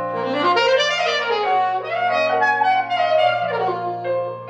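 Alto saxophone playing a flowing jazz melody over low, sustained accompaniment notes that change pitch every second or so.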